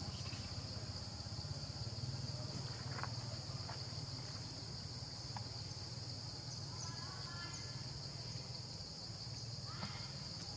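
Steady high-pitched insect drone, with a low steady rumble beneath it and a few faint short chirps and ticks.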